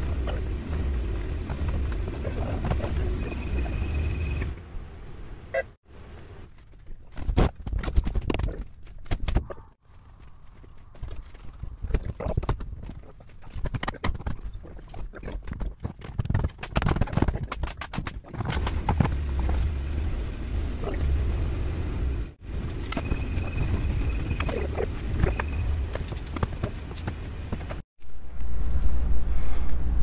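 Irregular knocks and clunks of heavy truck parts and tyres being handled and loaded onto a pickup's bed. At the start and again in the last third, a machine runs with a steady low hum.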